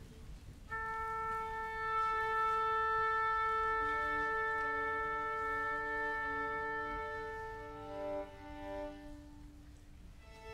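Orchestra tuning: a long held concert A, joined from about four seconds in by a few instruments sounding the neighbouring fifths as they tune their strings to it.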